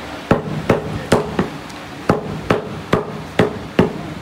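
Heavy meat cleaver chopping beef on a wooden block: about nine sharp, solid chops at a steady pace of roughly two a second.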